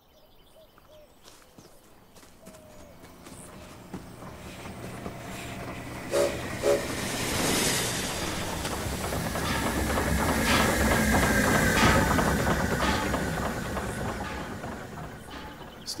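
A steam train approaching and passing: its rumble and clatter build slowly to their loudest about eleven or twelve seconds in, then ease off. Two short pitched blasts come about six seconds in, and a steady high tone sounds over the loudest part.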